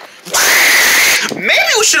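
A person screaming in one loud held yell for about a second, voicing a toy character, then starting to talk.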